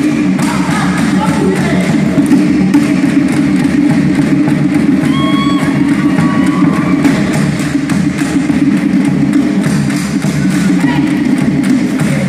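Live Tahitian drumming: laced skin drums struck with sticks in a fast, dense beat, with a woman's voice chanting over it into a microphone.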